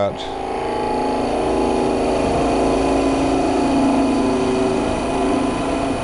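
Wood lathe running while a skew chisel takes a planing cut along the spinning spindle: a steady hum with the hiss of the cut, growing louder about a second in and easing off near the end.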